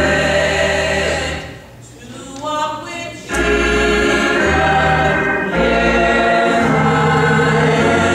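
Small gospel choir singing held chords with organ accompaniment. The music drops quieter for about a second and a half around two seconds in, then comes back in full.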